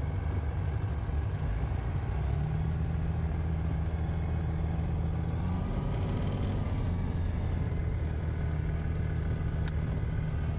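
Alpi Pioneer 300 light aircraft's Rotax four-cylinder engine running at low taxi power, heard from inside the cockpit as a steady drone. Its note shifts slightly a couple of times, and there is a sharp click near the end.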